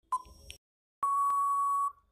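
Quiz countdown-timer sound effect: one short beep as the last second ticks, then a long steady beep lasting about a second as the timer runs out.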